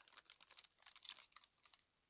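Faint crinkling of a plastic bag of Mykos mycorrhizal inoculant being handled: a quick, irregular run of small crackles that dies away shortly before the end.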